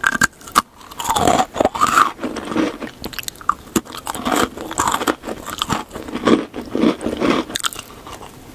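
Close-miked biting and crunchy chewing of a small gingerbread cookie: a run of irregular, crackly crunches.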